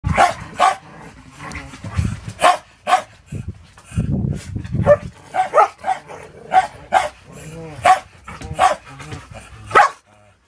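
Dogs play-fighting: a rapid series of short, sharp barks and yips, with lower growling between them.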